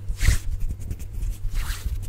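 Bare hands rubbing and swishing right at a condenser microphone, two sweeping swishes about a second and a half apart over soft low thumps from the hands moving close to the grille.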